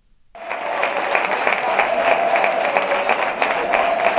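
After a moment of silence, loud steady applause sets in about a third of a second in: dense, even clapping with a faint steady tone underneath.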